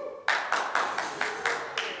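Hand claps at an even pace, about four a second, following the success of an upside-down water jar trick, after a short voiced sound at the start.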